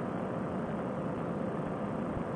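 Steady, even drone of a paramotor trike's engine and propeller in slow cruising flight.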